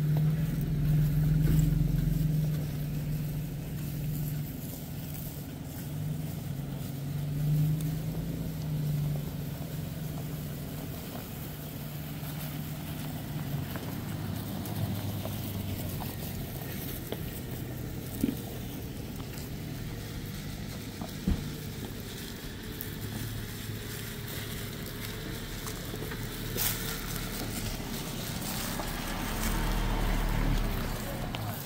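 Off-road SUV engines idling and moving slowly on a dirt track, a steady low hum. It is loudest at the start and swells again near the end, with a couple of faint clicks in between.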